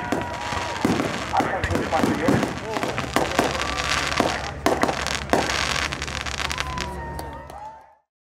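Fireworks going off: a quick series of pops and bangs over crowd voices, fading out near the end.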